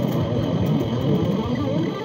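Electric guitar playing a lead line, its notes bending up and down in pitch.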